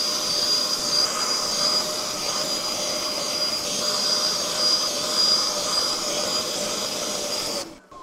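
Bissell SpotClean Pro carpet extractor's vacuum motor running steadily with a high whine, its hand tool drawn over a wet car floor mat on a dry pass, suction only with no spray, to pull out the leftover water. The motor cuts off just before the end.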